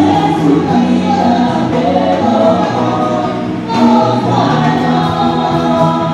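A church worship team of women and men singing a gospel song together into microphones, amplified through the PA, several voices holding long notes in chorus.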